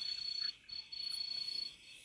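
Faint, high-pitched steady trill in stretches of about half a second to a second with short breaks, like an insect, heard through a live-stream call's audio.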